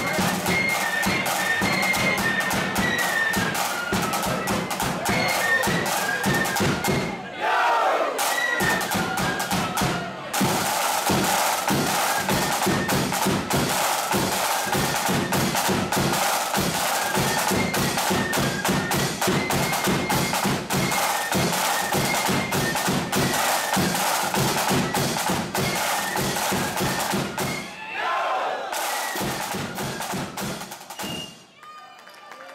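Marching flute band playing a tune: flutes carry a high melody over fast snare-drum rolls, with bass drum and cymbals. The music dips briefly about seven seconds in and again near the end.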